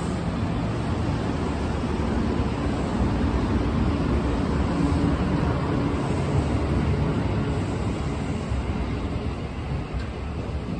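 A Kuroshio limited express electric train rolls slowly along the platform, making a steady rumble with a low hum that swells a little in the middle.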